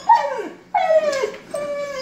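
Siberian husky giving two falling, whining howls: a short one at the start and a longer, drawn-out one about a second in that levels off before fading.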